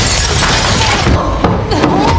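Glass shattering and breaking in a burst that is loudest in the first second, over a low rumble of film score.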